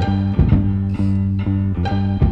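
Instrumental passage of a 1971 Italian pop song: bass and guitar over a steady beat, with no singing.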